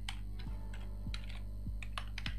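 Computer keyboard being typed on: a run of short, irregularly spaced keystrokes as a word is typed.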